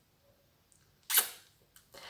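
About a second of near silence, then one short breath, a quick exhale or sniff of a laugh by a smiling woman, that fades within half a second.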